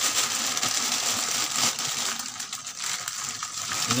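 Black plastic bag crinkling and rustling as long beans are shaken out of it into a bucket, with the beans rustling against each other.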